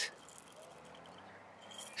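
Faint scrape of a heavy double-edged safety razor, a Parker 99R, drawn lightly down the lathered stubble under the chin on a second pass, cutting the whiskers.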